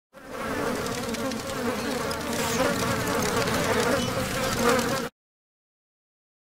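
Dense buzzing of an insect swarm that holds steady and cuts off suddenly about five seconds in.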